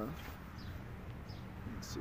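Quiet outdoor background with a few faint bird chirps and a brief rustle near the end.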